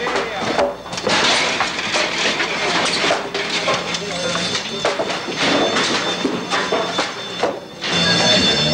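Broken timber and debris being pulled and thrown aside in a collapsed building: a steady run of wooden clatters, knocks and scrapes, with voices in the background.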